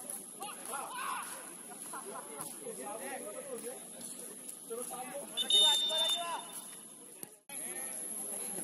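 Players' shouts and calls on an outdoor football pitch. About five and a half seconds in comes a brief shrill whistle blast, the loudest sound here. The sound drops out briefly near the end.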